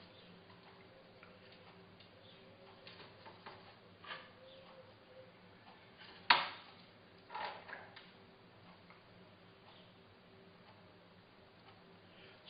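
Faint small clicks and taps from handling a pipette and a small bottle while dripping liquid onto foil, the sharpest about six seconds in, over a low steady hum.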